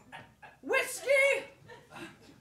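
A performer's voice giving two loud, high-pitched calls, each rising then falling, in a small theatre.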